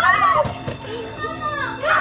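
Children's high-pitched voices calling out without clear words, in two short bursts near the start and near the end.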